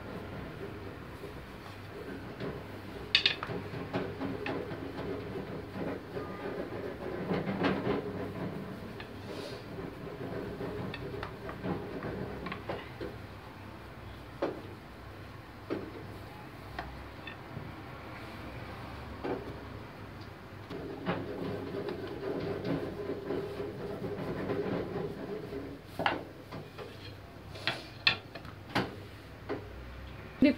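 Long thin wooden rolling pin rolling out dough on a countertop: a steady rumble of the pin going back and forth, with a few sharp knocks of the pin against the counter, once early on and several times near the end.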